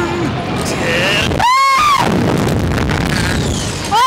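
Rush of air blasting the on-board microphone of a slingshot reverse-bungee ride as the riders are flung upward, a loud continuous roar of wind. About a second and a half in, one rider gives a short high-pitched scream that rises and falls over about half a second.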